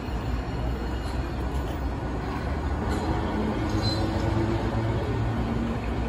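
Hiroden 3900-series articulated tram rolling slowly into the stop on street track: a steady low rumble of wheels on rail with a motor hum, and a brief high squeal about four seconds in.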